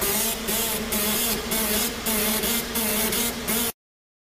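Automatic metal-plate marking machine running: a loud hiss that breaks off briefly many times, with a wavering hum underneath. The sound cuts off suddenly near the end.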